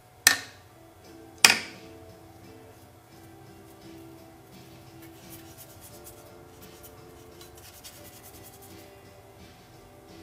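Two sharp knocks a little over a second apart near the start, each with a short ringing tail, over faint background music with steady held notes.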